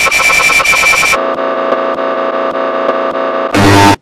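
Loud synthesized electronic noise in abruptly spliced pieces. It opens as a harsh, pulsing buzz, switches about a second in to a lower steady drone of several tones, then ends in a very loud short blast near the end that cuts off suddenly.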